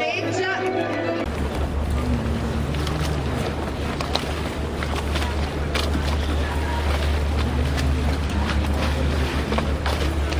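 Brief music, then wind buffeting the microphone as a steady low rumble with hiss.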